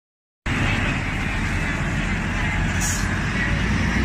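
Road traffic beside a bus stop: a steady low rumble of bus engines and traffic that cuts in abruptly about half a second in, with a brief high hiss about three seconds in.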